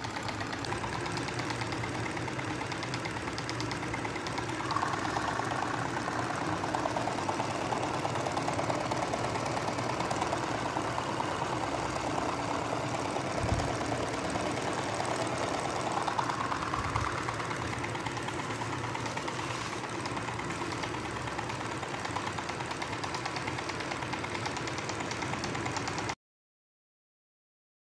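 Small brushed DC motor turning a bent-wire crankshaft that drives two syringe plungers back and forth, running with a steady fast rattle and whir, with one louder knock about halfway through. The sound cuts off suddenly at the end.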